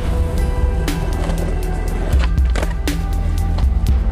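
Background music with a steady bass line over a skateboard rolling on concrete, with a few sharp clacks.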